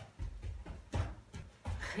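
A large dog's paws stepping onto an inflatable rubber balance bone (K9FITbone) on a foam floor mat: a few dull low thumps with paws rubbing on the cushion's rubber.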